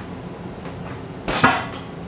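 A single sharp thump about one and a half seconds in, from the footwork of a sliding kick thrown while holding a cane.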